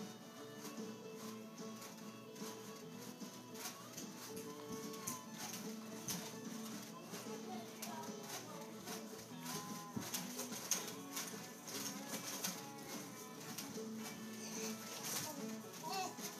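Faint background music with held, changing notes, with scattered light clicks throughout.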